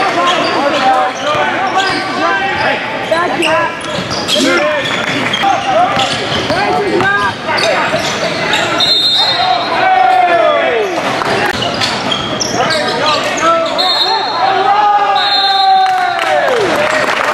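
Basketball game sounds on a hardwood gym floor: a ball being dribbled, sneakers squeaking, with one long falling squeak near the middle, and players' voices in the echoing hall.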